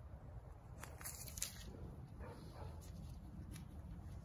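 Faint handling sounds from a matchlock dagger-pistol's mechanism being worked by hand: a few small clicks about a second in, then a soft rustle, over a low steady rumble.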